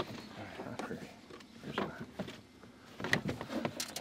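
A few sharp clicks and knocks, clustered near the end, with low, indistinct voices in between.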